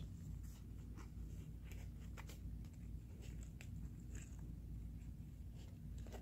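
Faint scratchy rustles and a few small ticks of hands handling a fabric zippered carrying case holding a fidget spinner, over a steady low room hum.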